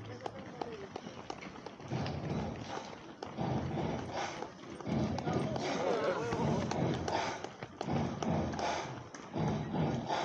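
Footsteps of many runners in running shoes striking the asphalt as they pass close by, the footfalls overlapping in a quick, uneven patter, along with indistinct voices.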